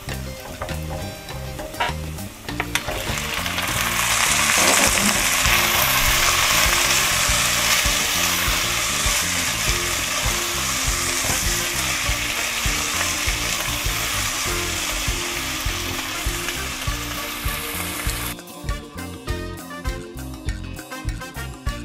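Deboned chicken feet frying in hot oil with sautéed shallots, garlic and lemongrass in a pot, sizzling loudly as they are stirred with a wooden spatula. The sizzle builds a few seconds in and drops away sharply near the end.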